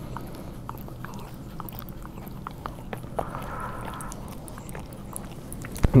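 Puppy licking a man's face close to the microphone: a run of soft, irregular clicks.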